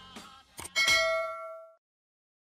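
Subscribe-button sound effect: a quick click followed by a bright bell ding that rings and fades out within about a second.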